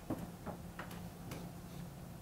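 Marker writing on a whiteboard: a few faint, short strokes of the felt tip on the board, unevenly spaced, as letters are drawn.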